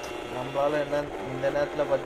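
A man talking over the running engine of a Yamaha RX100, a single-cylinder two-stroke motorcycle, being ridden at speed; the voice is the loudest sound, starting about half a second in.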